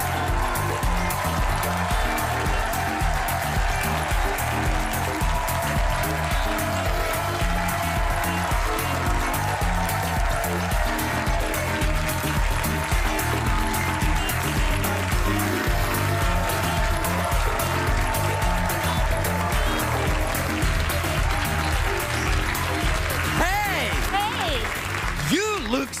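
A studio audience applauding over upbeat walk-on music with a steady, thumping beat.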